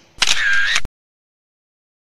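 A short, loud camera-shutter sound effect lasting about two-thirds of a second, with a curved tone through it, that cuts off abruptly.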